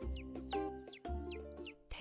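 Chicks peeping in short, high, falling cheeps, a few each second, over background music with a steady bass.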